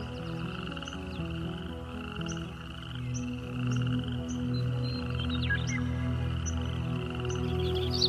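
Soft, sustained ambient music under a steady trilling chorus of frogs croaking, with scattered short bird chirps. A bird breaks into quick chirping song near the end.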